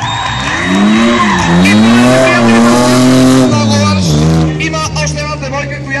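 A drift car's engine revs hard while its tyres squeal through a sideways slide. The pitch climbs, dips once, then is held high for over a second before falling back to a steadier lower note about four seconds in.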